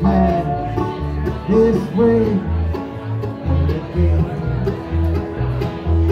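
Live bluegrass band playing: acoustic guitar, mandolin and banjo picking over a steady alternating bass beat of about two notes a second.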